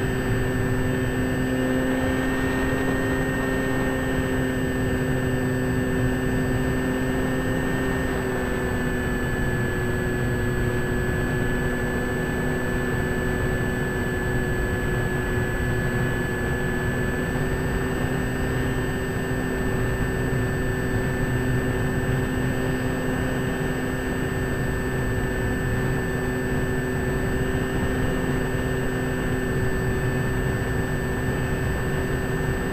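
Motors and propellers of a C-54 model airplane heard from a camera on board: a steady drone of several held tones over rushing wind. The pitch dips slightly about eight seconds in and comes back up around seventeen seconds.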